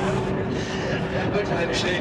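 A man speaking German over the steady low rumble of an Airbus A380's jet engines as it climbs steeply overhead.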